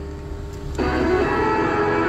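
A small retro-style FM radio playing a news broadcast through its speaker. After a brief pause with a low hum, the station's music starts about a second in and keeps playing.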